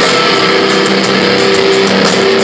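Metal band playing live and loud: electric guitars holding steady chords over drums and cymbals, with no vocals.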